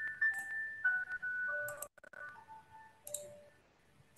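A faint electronic melody of held pure tones stepping between several pitches, with a few sharp clicks; it fades to very faint near the end.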